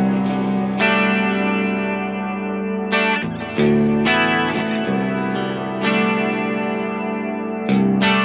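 Jackson Pro Dinky seven-string electric guitar played on its bridge pickup, a Fishman open-core Fluence Classic, switched to coil-split mode: chords picked and left to ring, with a new chord struck every second or two.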